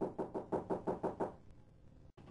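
A quick, even run of about eight sharp taps, some six a second, that stops about a second and a half in.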